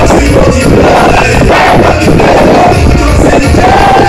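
Loud soca music with a singing voice over a heavy bass beat, recorded right at the top of the level throughout.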